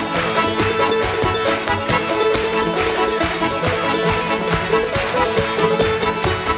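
A lively traditional tune played on fiddle and accordion, with a step dancer's quick percussive foot taps on the stage floor beating along with the music.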